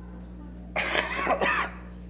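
A person coughing once, a burst about a second long, over a steady low electrical hum.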